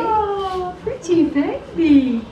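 Young baby cooing: a few short pitched vocal sounds, the first sliding down in pitch, then two brief rise-and-fall coos.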